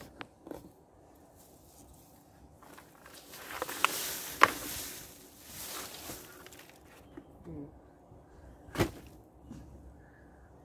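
A potted ginger plant being knocked out of its black plastic pot. For a few seconds there is rustling and scraping of plastic, soil and leaves as the pot is upended, with two sharp knocks about four seconds in. Another sharp knock comes near the end.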